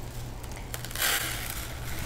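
Granulated cane sugar pouring from a tilted plastic jar into a plastic bowl: a soft, grainy hiss that starts about a second in and is strongest briefly before thinning out.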